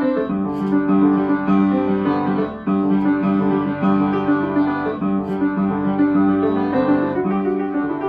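Upright piano being played: a lively country fiddle-tune piece, with a repeating bass figure under the melody.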